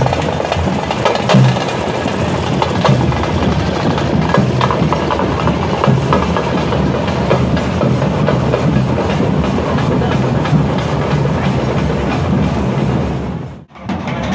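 Street procession drumming and music, loud and continuous, with the sound dropping out briefly near the end.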